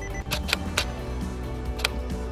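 Nikon D750 shutter firing a quarter-second exposure: two sharp clicks about a quarter of a second apart, then two more single clicks, one soon after and one later, over quiet background music.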